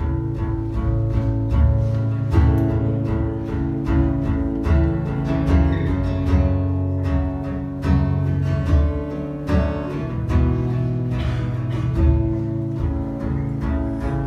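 Live band playing an instrumental passage: strummed acoustic guitar and electric guitar over a steady, rhythmic low pulse.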